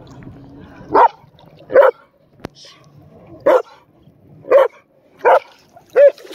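A dog barking: five loud, short barks at uneven gaps, starting about a second in, with another at the very end.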